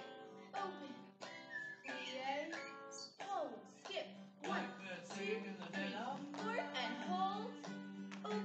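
Recorded song playing through a speaker in the room: a solo sung vocal over acoustic guitar.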